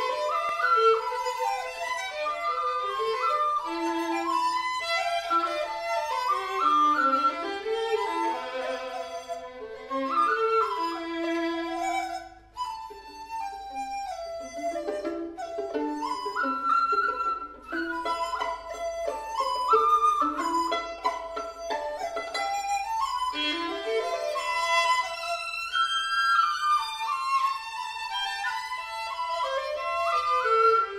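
Violin and xiao, a Chinese end-blown bamboo flute, playing a melodic duet.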